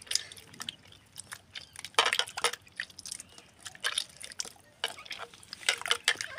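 A hand squeezing and stirring crushed aloe vera in a bowl of water, working it in to dissolve: irregular splashes and sloshes, loudest about two seconds in and again near the end.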